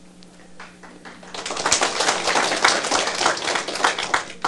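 Audience applauding: many hands clapping, starting about a second in, building, then thinning out near the end.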